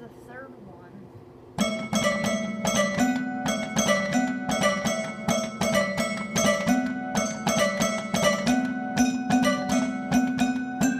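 Piano starts playing a quick repeating melody about one and a half seconds in, with sharp note attacks several times a second over a low bass line that moves between two notes.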